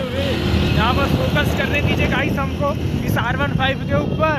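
A motorcycle ridden along a road: a steady low engine and wind rumble on the microphone, with voices over it.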